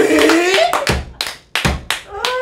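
A man's long, drawn-out 'eeeh!' of astonishment, falling in pitch, then several sharp hand claps.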